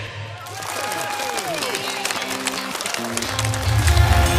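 Studio audience applauding and cheering over the last ringing notes of a heavy metal band. About three seconds in, the next heavy metal song, with guitars and bass, starts up loudly.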